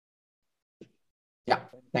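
Near silence, as on a muted or noise-gated video call, then a man says "Yeah" near the end, his voice cutting in abruptly.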